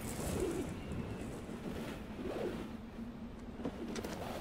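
A dove cooing softly twice, once near the start and again a little past the middle, over a faint breeze.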